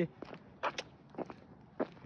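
Footsteps of a person walking outdoors: a handful of short footfalls spread through the stretch.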